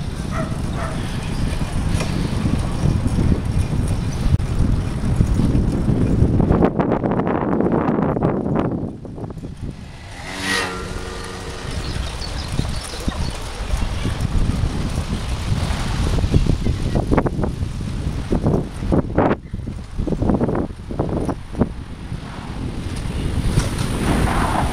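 Wind noise on a bicycle-mounted camera's microphone while riding along an asphalt cycle path, mixed with tyre and road rumble. It eases for a couple of seconds about nine seconds in, where a brief pitched sound is heard.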